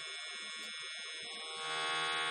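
AC TIG arc from an HTP 221 inverter welder burning between balled tungsten electrodes at 40 amps, giving a steady high buzz that gets louder near the end.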